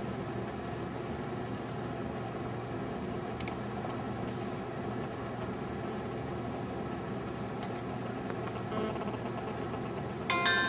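Steady low mechanical hum of room background noise, like a ventilation fan, with a few faint clicks.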